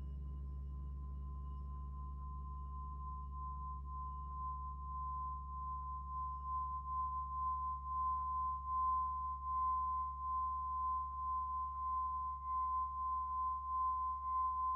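Small hand-held Tibetan singing bowl sounding a steady high tone after being struck, then sung by rubbing a wooden mallet around its rim, so the tone swells and wavers louder over the seconds. Faint ticks come from the mallet chattering on the rim.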